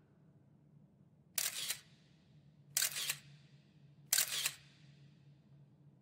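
Three camera-shutter clicks as an added sound effect, evenly spaced about a second and a half apart, each a quick double click. A faint low hum runs underneath.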